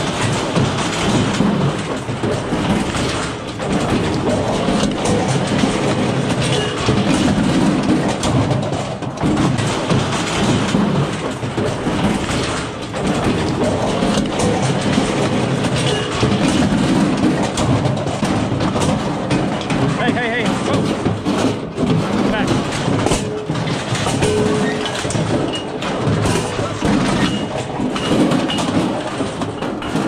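Steel squeeze chute rattling and clanking steadily, close to the microphone, with a bison cow held inside.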